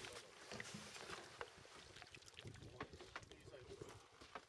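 Faint handling noise of a landing net being lifted out of the water and over a boat's gunwale: scattered light clicks and taps over a low hiss.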